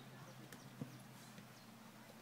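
Faint dull knocks of a football being kicked on a grass pitch, two of them close together under a second in, over a faint steady low hum.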